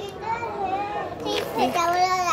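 A small girl's high-pitched voice, talking in short runs of speech-like sounds.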